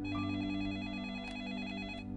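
Landline telephone ringing with a fast electronic warble, over a steady low sustained music drone.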